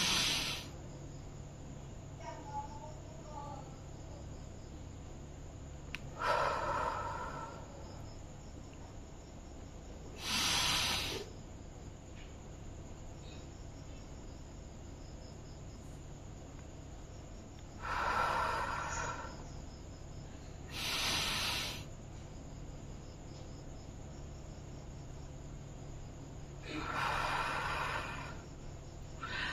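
A woman taking slow, deep breaths in a paced breathing exercise: audible breaths in and out through the mouth, each about a second long, with held pauses of several seconds between them.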